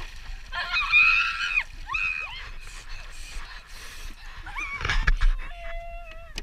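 A boy's high-pitched wordless yelps and shrieks in cold lake water, with water splashing around him. A louder low thump comes about five seconds in.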